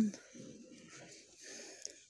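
A spoken word ends at the start, then faint, even background hiss of an indoor shop, with one small click near the end.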